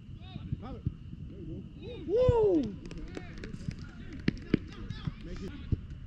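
Players' voices calling and shouting across a football pitch, one loud drawn-out shout about two seconds in, with a few sharp knocks in the second half.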